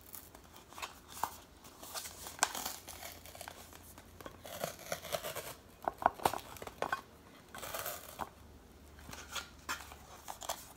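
Paper-wrapped cardboard tube of refrigerated cinnamon-roll dough being peeled and torn apart by hand: the paper and cardboard rustle and tear, with scattered light clicks and taps as the metal end caps are handled.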